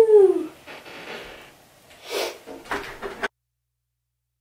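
A woman's cheering "woo!" sliding down in pitch and ending about half a second in, followed by a few faint short noises; the sound then cuts out to dead silence near the end.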